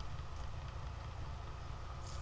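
Homemade Bedini motor running with its magnet rotor wheel spinning steadily and its pickup coil shorted, giving a steady low hum.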